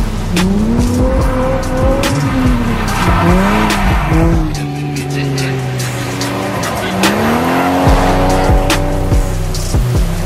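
Drift car engine revving up and falling back again and again as the car slides, with tyre squeal, under background music with a steady bass and beat.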